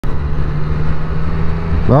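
Triumph Street Triple 765 RS inline-three engine running at a steady cruise, mixed with wind and road noise, heard from a microphone inside the rider's helmet.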